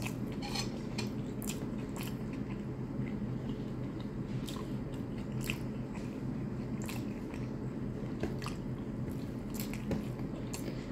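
A person chewing and biting a mouthful of rice and stewed chicken, with many short wet mouth clicks and smacks scattered through, over a steady low hum.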